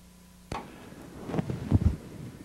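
A faint steady electrical hum, then a sudden click about half a second in as the announcer's microphone comes live. Rustling handling noise and a few low thumps on the microphone follow.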